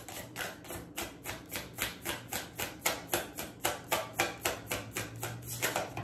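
A deck of tarot cards being shuffled by hand: a quick, even run of card slaps, about five a second.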